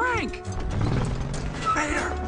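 An old tow truck driving off over rough ground, its body rattling and clanking over a low engine rumble. A whooping voice trails off at the start, and another short vocal sound comes near the end.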